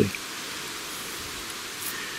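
A steady, even hiss of outdoor background noise, with no distinct events.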